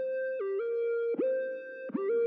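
Lone synth lead from Serum: a mono triangle-wave tone whose pitch LFO swoops each note up from below, with glides between notes. New notes swoop in about a second in and near the end, with a short step down in pitch around half a second in.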